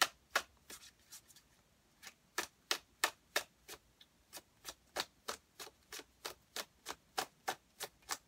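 A tarot deck shuffled overhand in the hands: a steady run of sharp card taps, about three a second, with a short lull about one and a half seconds in.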